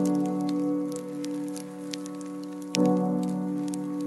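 Soft piano chords ring and sustain, with a new chord struck near the end, over a layer of water sounds with scattered small drop clicks.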